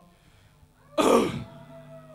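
A man clearing his throat once into a microphone, amplified through the PA, about a second in. A low steady amplifier hum carries on after it.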